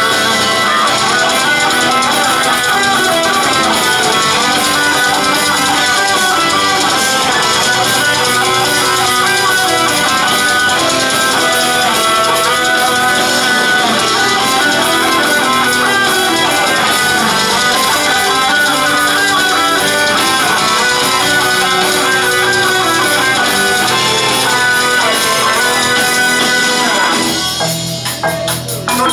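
Live band playing an instrumental passage on electric guitars and bass guitar, loud and dense, with no singing. In the last second or so the music drops and breaks up.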